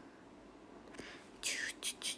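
A young woman whispering: a few short, breathy, hissing syllables in the second half, after a faint click about a second in.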